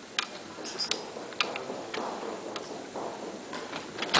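A few sharp clicks and taps at irregular intervals, about five in four seconds, over faint room noise in a large hall.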